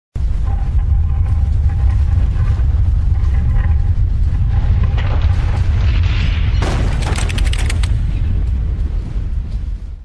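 Sound effects of an animated logo intro: a continuous deep booming rumble with a faint steady tone over it, a swelling whoosh about five to six seconds in, then a burst of crackling around seven seconds. It cuts off abruptly at the end.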